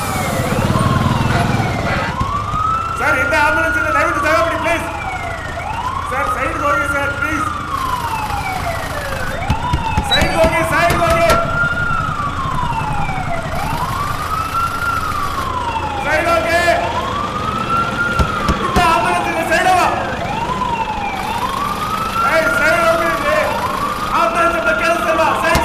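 Ambulance siren wailing, each quick rise and slow fall in pitch repeating about every three seconds, with car horns honking on and off in a traffic jam.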